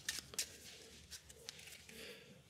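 A deck of game cards being handled and squared in the hands: a few faint soft ticks and rustles, the sharpest about half a second in.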